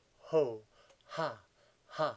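A man's deliberate laughter-yoga laughing: short loud "ha" bursts, about one a second, each falling in pitch.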